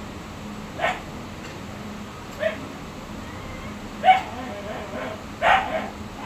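A dog barking: four short barks spread over a few seconds, the third the loudest, over a low steady background hum.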